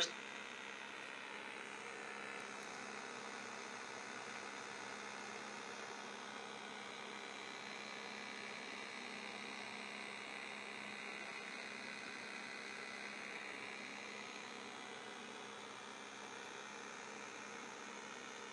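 Steady faint hiss with a low electrical hum, unchanging throughout: background noise with the TV programme's sound stopped.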